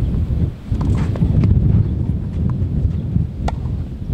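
Tennis ball knocked by rackets and bouncing on a clay court: a few sharp knocks, the loudest about three and a half seconds in, under a heavy rumble of wind on the microphone.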